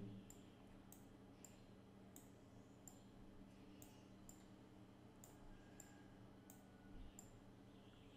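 Faint computer mouse clicks, about two a second, over near silence as the 3D view is zoomed.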